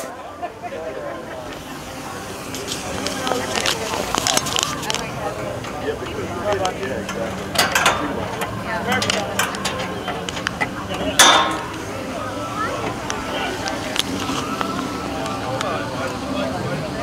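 Scattered metallic clicks and clinks as the bonnet of a 1960 Jaguar XK150 is unlatched and lifted, the sharpest and loudest about eleven seconds in, over a steady murmur of crowd voices.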